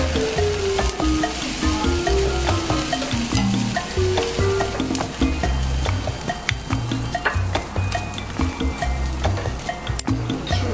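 Eel fillets sizzling on a grill grate over charcoal, with short clicks of metal tongs turning and moving the pieces, under background music.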